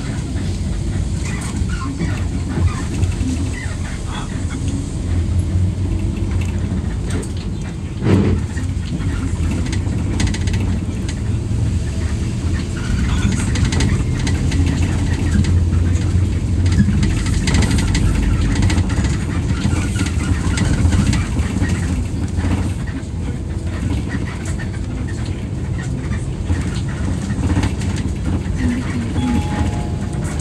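Cabin sound of a moving 2013 Daewoo BS106 NGV city bus: the compressed-natural-gas engine's steady low drone under road and tyre noise, with one sharp knock about eight seconds in.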